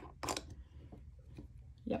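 Brief handling sounds of hands moving things on a tabletop: a short rustle and a couple of light taps early on, then mostly quiet.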